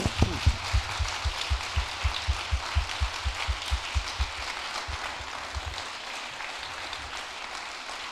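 Audience applause, with one person's claps close to a microphone heard as heavy thumps about four a second until about six seconds in; the applause then goes on more softly.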